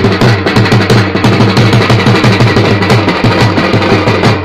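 Loud devotional music driven by fast, even drumming over a steady low bass.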